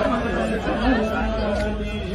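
A man's voice, held at a fairly steady pitch, over chatter from people around.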